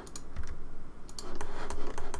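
Computer keyboard keys clicking in an irregular run of quick taps, as shortcuts are typed while working in 3D modelling software.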